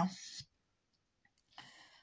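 A woman's voice ending a word at the very start, then a pause with soft mouth and breath sounds, and a short breath in near the end.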